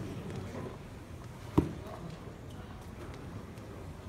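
Quiet hall background with a single sharp knock about one and a half seconds in.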